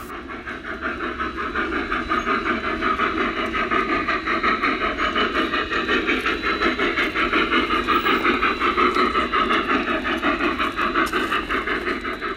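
A large-scale (1:20.3) narrow-gauge model steam locomotive chuffing in a quick, even rhythm, with a steady hiss of steam.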